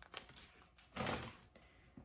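Quiet handling noise of a plastic art supply case and its peeled-off protective film: a few small clicks and taps, with a short rustle about a second in.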